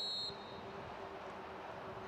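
Referee's whistle: one short, shrill blast right at the start, the kind that stops play for a foul, then open-air field noise.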